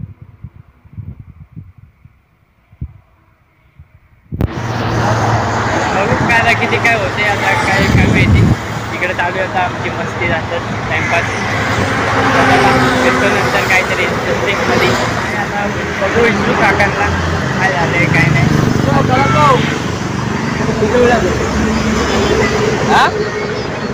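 A few faint low knocks, then about four seconds in the sound cuts suddenly to a loud roadside mix: people's voices talking over the steady rumble of passing road traffic.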